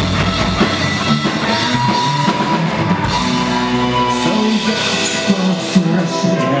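Punk-rock band playing live, an instrumental passage of drum kit, bass guitar and electric guitar, with long held notes coming in about halfway.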